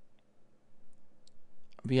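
A few faint, short clicks spaced irregularly, then a man starts speaking near the end.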